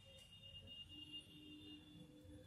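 Near silence, with faint held tones of soft background music; a lower tone joins about a second in.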